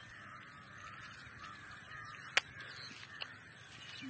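Faint bird calls wavering over quiet open-air ambience, with one sharp click about two and a half seconds in.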